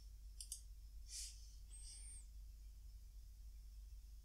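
Near silence, broken by two faint quick clicks of a computer mouse about half a second in.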